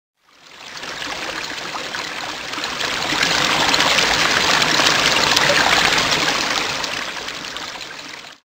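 Flowing, trickling water with small droplet splashes, a sound effect for a logo forming out of liquid. It fades in, swells to its loudest a little past halfway, and fades out near the end.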